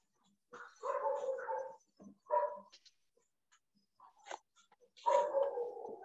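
Three drawn-out animal calls. The first and last each last about a second, and a shorter one comes between them.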